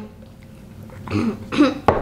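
A person clearing their throat: a few short, rough throat sounds starting about a second in, then a sharp click near the end.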